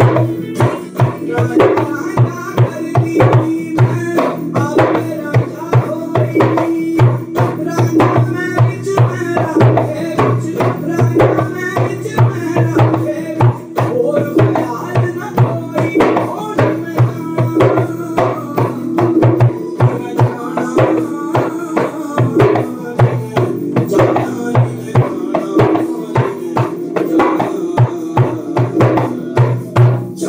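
Djembe played with bare hands in a fast, steady rhythm of strokes, over music that holds a sustained low drone underneath.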